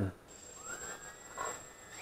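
Flying 3D X6 quadcopter's motors spinning up on the ground before takeoff: a faint high whine with a slowly rising tone, swelling sharply into a loud whine at the very end as the throttle comes up.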